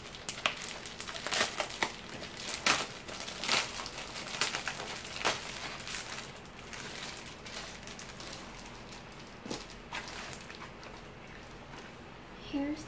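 Plastic bubble mailer crinkling and crackling as it is opened by hand. The crackles are thickest in the first half and thin out toward the end.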